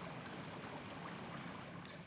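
River water pouring over a weir: a steady, even rush that breaks off abruptly near the end.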